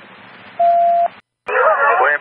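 Police dispatch radio: faint static hiss, then a single steady beep about half a second long that ends with a click, before a voice comes back on the channel near the end.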